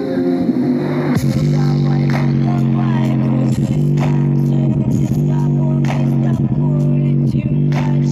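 JBL Charge 4 portable Bluetooth speaker playing bass-heavy music at 100% volume. Heavy sustained bass notes with a beat come in about a second in.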